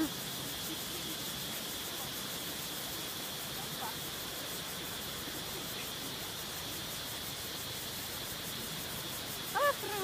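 Steady hiss of distant surf on a sandy beach, even and unbroken, with a faint constant high-pitched tone over it.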